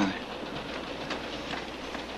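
Steady rumble of a moving railway freight car, with a few faint knocks from the wheels.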